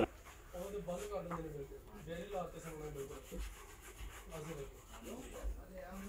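Leather steering-wheel cover rubbing against itself and the rim as it is pulled and worked onto the wheel by hand, with faint voices in the background.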